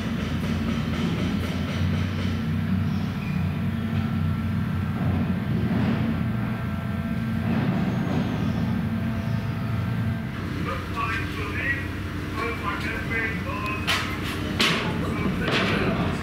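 A steady low mechanical drone with a hum, which weakens about ten seconds in, when indistinct voices of people talking come in.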